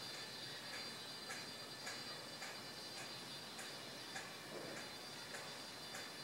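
Faint, regular ticking about twice a second over a steady low hiss.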